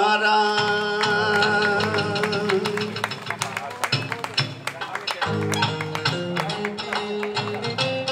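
Kawachi ondo band playing an instrumental passage on guitar, bass and drums: a held note for about the first two seconds, then a busy, strongly percussive groove over a steady bass line.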